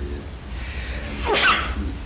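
A single human sneeze, a sudden rising burst a little over a second in.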